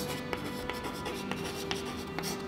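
Chalk writing on a chalkboard: a string of short taps and scrapes as letters are stroked out, over soft background music with held tones.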